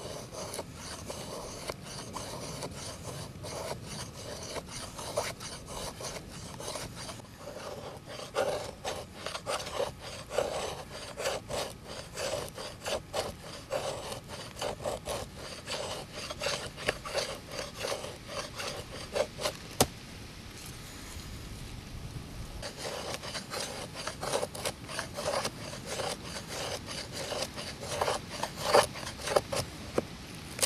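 Steel knife blade scraping repeatedly over dry plant fibre and wood, about two or three strokes a second. The strokes pause for a couple of seconds about two-thirds through, then come sharper and louder near the end.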